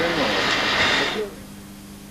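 A voice trailing off under a loud, even hiss that stops abruptly about a second in. What remains is a quiet, steady electrical hum from an old video tape recording.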